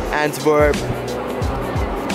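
Background music with a steady beat: low kick thuds about twice a second over a held bass line, with a short pitched melodic phrase about half a second in.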